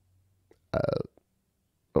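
A man's short, hesitant 'uh' about a second in, falling in pitch; otherwise near silence.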